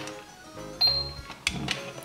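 Toy electronic cash register being rung up: a couple of sharp key clicks and one short high beep about a second in, over background music.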